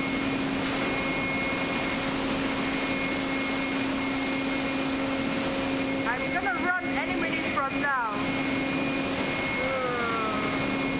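Seawater washing across a ship's working deck in high seas, over the steady hum of the vessel's machinery. Brief voices come in about six to eight seconds in.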